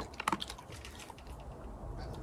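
Border collie licking and smacking at a treat: a quick cluster of small mouth clicks in the first half-second, then a few scattered soft ticks.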